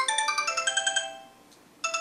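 Sony Ericsson K790a mobile phone ringing for an incoming call with a melodic ringtone of quick, bright notes. The phrase fades out about a second in and starts over after a short pause near the end.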